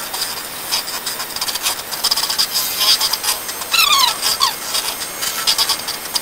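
Electric hand mixer whipping all-purpose cream in a stainless steel bowl: a steady motor whine with the beaters clicking and scraping against the bowl as the cream thickens toward double its volume. A couple of short falling squeaks come about four seconds in.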